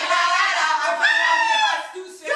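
A woman singing a few long held notes unaccompanied, one breath running into the next.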